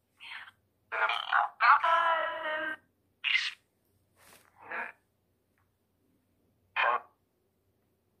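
Chopped, garbled voice-like fragments from a Necrophonic ghost-box app playing through a speaker: about seven short bursts broken by dead silence, the longest just under a second and a half long with a held, wavering tone.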